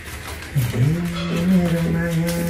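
A man's voice holding one long, low, steady note, hummed or drawn out, beginning about half a second in after a short dip in pitch.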